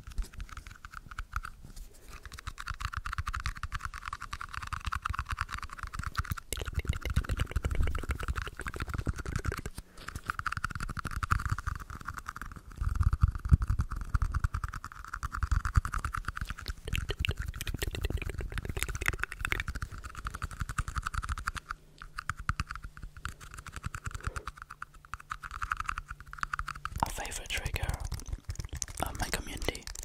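Close-miked fingertip scratching and tapping on a microphone's metal grille and on a plastic cap fitted over it: a dense, fast run of small scratches and taps.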